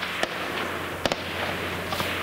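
Two gunshots, one just after the start and one about a second in, over a steady background hiss.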